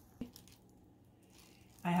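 Quiet handling of crescent roll dough on a parchment-lined baking sheet, with one small click just after the start. A woman's voice starts near the end.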